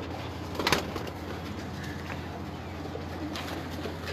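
Domestic pigeons cooing softly in a loft, with one sharp knock a little under a second in.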